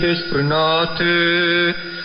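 A man's voice chanting long held notes, received as a shortwave AM broadcast on 7250 kHz in the 41-metre band. A steady high whistle comes in near the end.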